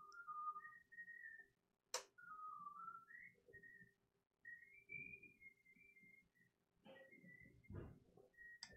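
A person softly whistling a wandering tune, the notes stepping up and down, with a single sharp click about two seconds in.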